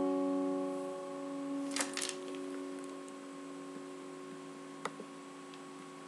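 Acoustic guitar's final chord ringing out and slowly dying away. There are a few soft clicks about two seconds in and one more near the end.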